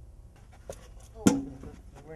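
Rustling and handling noise close to the microphone, then a single sharp knock about a second in, the loudest sound, followed at once by a short vocal sound.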